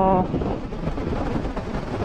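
Wind rushing over the microphone mixed with the steady drone of a motor scooter's engine and tyres cruising at about 100 km/h.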